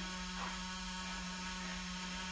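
A steady low electrical hum from the school bus's electrics, switched on with the key while the engine is off.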